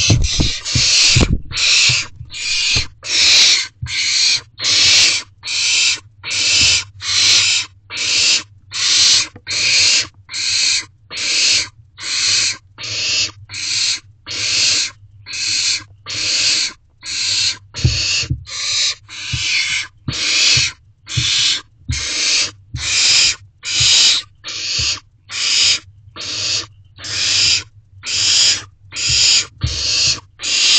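Barn owl owlets giving their rasping, hissing begging calls over and over, a little more than one a second, in a steady rhythm. Low thumps of movement on the nest box floor near the start and about halfway through.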